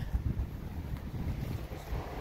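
Wind buffeting the microphone outdoors: an uneven low rumble with no other clear sound over it.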